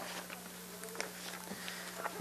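Faint steady electrical hum on the studio audio feed, with a few faint clicks.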